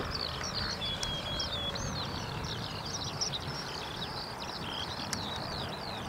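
Many birds chirping and calling continuously over a steady low rushing background noise.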